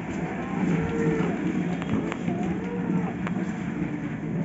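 Plastic toddler tricycle wheels rumbling over a marble floor, with two long rising-and-falling calls over it, the first about half a second in and the second near the end.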